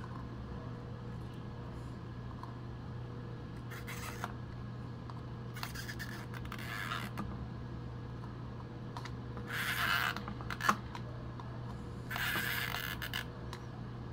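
Plastic Single-8 film cartridge handled and slid against the camera's film compartment: four short scraping, rustling noises spread through, over a steady low hum.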